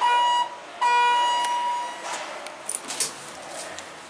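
Elevator arrival chime: two electronic dings at the same pitch, the first short and the second ringing out and fading. Two strokes with the red lantern lit at the top floor signal that the car will travel down.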